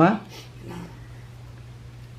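A man's voice preaching a Buddhist sermon in Khmer ends a phrase right at the start, then pauses. Through the pause there is only a steady low hum and faint room tone.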